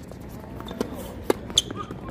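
Tennis ball being served and played in a doubles point on a hard court: a few sharp pops of ball on racket strings and court, the loudest two close together a little past the middle.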